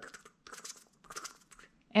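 Wall-hung picture frames rattling lightly against the wall in a few short bursts of clicking.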